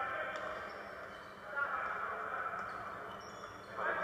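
Basketball arena crowd noise, a steady murmur of many voices, heard through a TV speaker, dipping a little in the middle.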